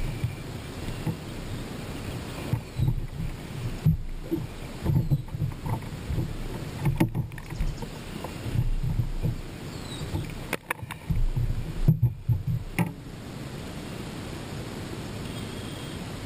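A hooked largemouth bass being landed on a bass boat: irregular thumps and sharp slaps as the fish flops on the boat's carpeted deck, loudest in the middle of the stretch, then settling down near the end.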